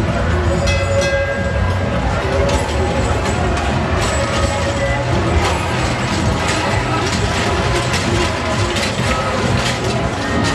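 Children's roller coaster train running along its steel track close overhead. From a couple of seconds in, its wheels make a rapid, continuous clatter. Voices can be heard behind it.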